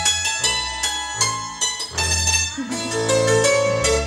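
Instrumental passage of Appenzell folk string music: a double bass holding low notes beneath quick, bright string notes.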